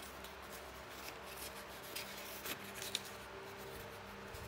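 Small paper cards being slid into a paper pocket of a scrapbook album: faint rustling and a few light paper taps, one slightly sharper tick near the end.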